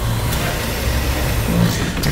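Forklift engine running steadily with a low hum while its forks lower the raised side-by-side onto its suspension.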